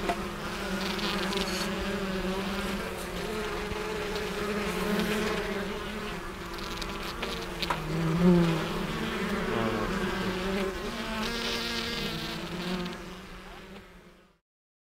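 Honeybees buzzing around the hives in a steady, wavering drone, swelling briefly as a bee passes close about eight seconds in, then fading out at the end.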